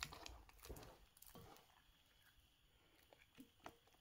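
Near silence, with a few faint wet slaps and squishes in the first second and a half, then two faint ticks near the end. The slaps are a hand beating a loose yeast batter in a glass bowl.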